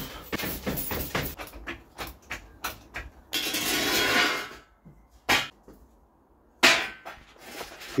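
Steel axle stand and trolley jack being set under a car on block paving: a run of light metallic knocks and clicks, a scrape lasting about a second partway through, then one louder knock.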